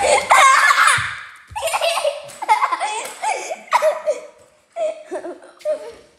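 A child's high-pitched laughter in repeated short bursts, fading toward the end, with a thump at the start and another about a second in.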